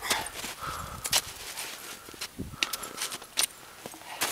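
Irregular crunches and scrapes of boots, knees and crutch tips biting into firm, hard-packed snow while climbing a steep slope on all fours with forearm crutches.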